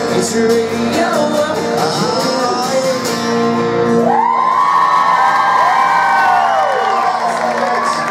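Acoustic guitars and singing in a live country song hold a final chord, which ends about halfway through. The crowd then whoops and cheers.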